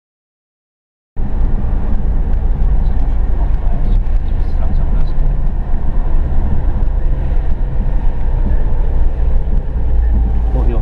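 Silence, then from about a second in the steady low rumble of a car driving on a wet road, heard from inside the car.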